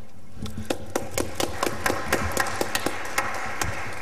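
Scattered applause from a small audience: separate claps, several a second, thickening in the middle and thinning toward the end.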